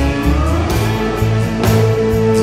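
Instrumental passage of a country-rock song: guitars over bass and drums, with a guitar note sliding upward about half a second in.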